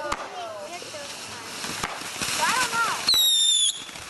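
Backyard fireworks: a few sharp pops, then near the end a loud, high whistle lasting about half a second that drops slightly in pitch, from a whistling firework.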